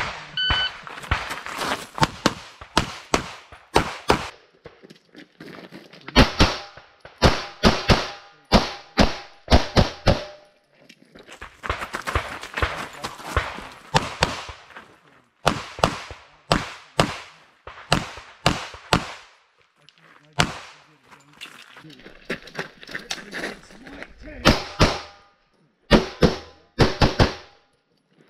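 Electronic shot-timer start beep, then a pistol stage fired in strings of quick shots, two or three close together, with short gaps as the shooter moves between positions. The last shots fall about 27 seconds in.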